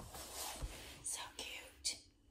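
A person whispering softly, without a clear pitched voice, with a few hissing s-like sounds in the second half and a faint low bump about a third of the way in.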